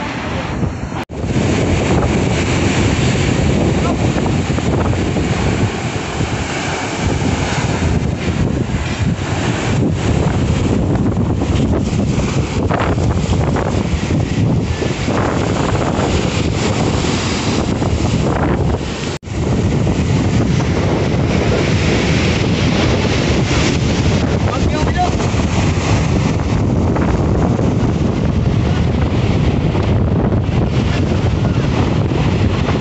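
Strong wind buffeting the microphone over rough surf breaking and washing up the beach, a steady roar that cuts out briefly twice.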